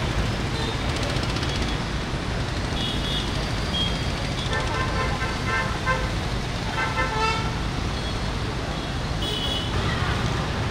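Heavy traffic at a standstill: a steady rumble of idling engines, with car and motorbike horns honking again and again, the longest horn sounds coming about five and seven seconds in.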